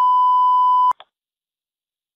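Censor bleep: a single steady high tone lasting about a second, masking a redacted address in police radio traffic. It cuts off abruptly, a brief blip follows, and then the audio drops to dead silence.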